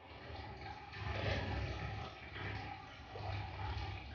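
Faint rustling of a sock being folded and rolled up by hand on a carpet, coming in a few soft swells.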